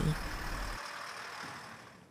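Engine and road noise of a wheeled armoured vehicle driving past, a low rumble that drops away under a second in, the rest fading out steadily.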